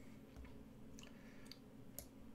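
Near silence: faint room tone with a low steady hum and a few soft, faint clicks.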